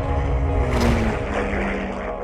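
Propeller airplane flying past: a rushing whoosh that swells to a peak about a second in, with a low engine tone dropping in pitch, over held notes of background music.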